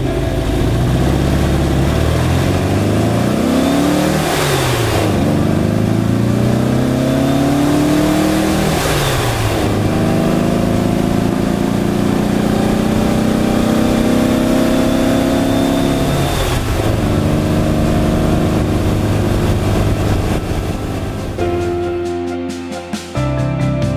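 1960 Porsche 356 B's air-cooled flat-four engine, heard from inside the cabin, pulling up through the gears. The pitch rises, then drops at three upshifts about four and a half, nine and sixteen and a half seconds in, and after the last one it cruises fairly steadily.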